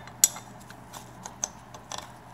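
Small metal clicks from a Corvair single master cylinder and its piston being handled at the cylinder bore: one sharp click about a quarter second in, then a few lighter ticks.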